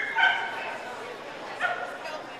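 A dog giving short, high yips: two at the start and one more about a second and a half in.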